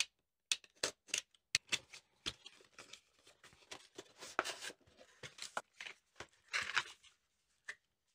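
Cardboard product box being cut open with a utility knife and unpacked: a string of sharp clicks, scrapes and rustles of cardboard and packaging, busiest around four and six and a half seconds in.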